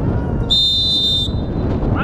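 A referee's whistle blown once in a short, steady, high blast of a little under a second, signalling the kick to be taken. It is heard over low wind rumble on the microphone.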